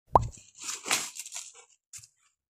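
A short, loud plop that rises quickly in pitch, then a sponge scrubbing on a wooden desktop for about a second.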